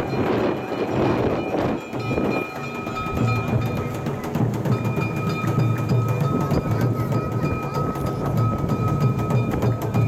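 Festival music from a yamakasa float procession, with drumming and clicking percussion under a long held high note that breaks off briefly around the middle.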